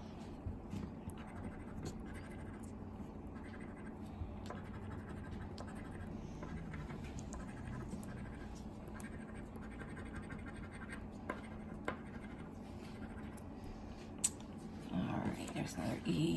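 A coin scratching the coating off a paper scratch-off lottery ticket: a steady, quiet rasping with small irregular ticks and one sharper click near the end.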